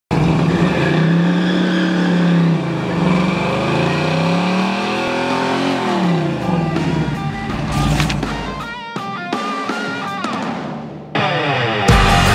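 A classic Chevy II Nova's engine revving up and down during a burnout. Music with guitar comes in over it about halfway through.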